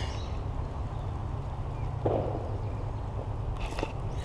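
Spinning reel being cranked to retrieve an inline spinner: a low steady whir, with a short rustle about two seconds in and a few light clicks near the end.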